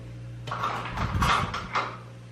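Irregular rustling and light clattering of things being handled by hand, from about half a second in until just before the end, over a steady low hum.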